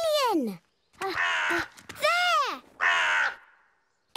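A crow cawing: about four calls roughly a second apart, each rising and falling in pitch.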